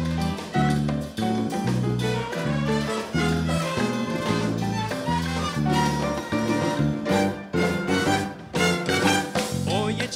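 Live salsa band playing an instrumental passage. Trumpets, trombones and saxophones play over piano, bass, guitar, drum kit and Latin percussion (congas, timbales, claves).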